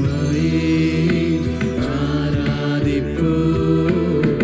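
Tamil Christian worship song played by a live band: voices singing over keyboard, bass guitar and cajon, with a steady beat.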